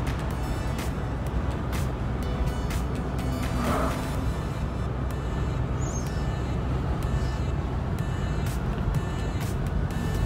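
Steady road and engine rumble inside a Toyota SUV's cabin while driving, under music with a steady beat.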